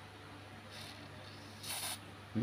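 Aerosol can of RP7 spraying into a printer's power switch to clean its contacts: a faint brief hiss about a second in, then a louder short hiss near the end.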